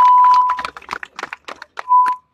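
A megaphone gives a loud, steady, high whine for well under a second, then scattered hand-claps follow. A second short whine comes near the end.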